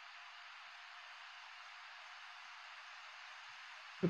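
Near silence: a faint, steady hiss of the recording's noise floor, with no other sound.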